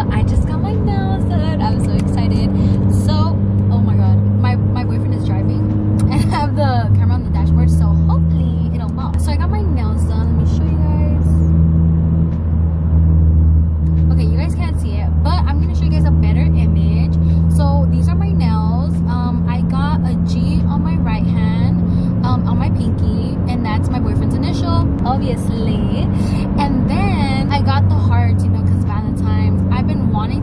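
A woman talking inside a moving car, over the steady low drone of the engine and road noise in the cabin. The drone drops in pitch about seven seconds in.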